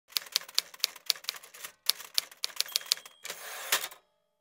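Typewriter keystrokes as a logo sound effect: sharp clacks about four a second with a brief pause partway, ending in a short rasping sweep near the end.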